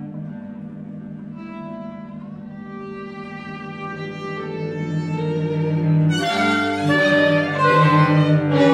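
Chamber trio of violin, cello and clarinet playing: a low sustained cello line, with the violin entering above it about one and a half seconds in. The music grows steadily louder and becomes busier and louder from about six seconds in.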